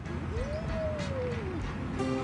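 A toddler's voice: one long call that rises and falls in pitch over about a second and a half, over faint background music.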